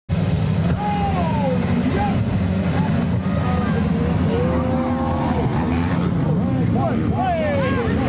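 A pack of trail bikes racing on a dirt track, several engines running at once with a steady low din and engine notes revving up and down.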